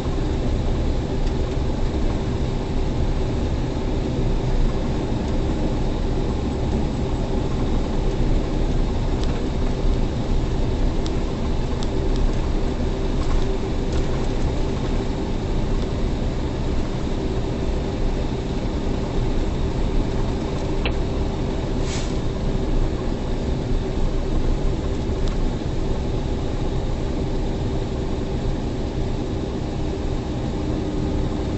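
Steady drone of a semi truck's diesel engine and tyres on a snow-covered highway, heard from inside the cab, with a few faint clicks, two of them about three-quarters of the way through.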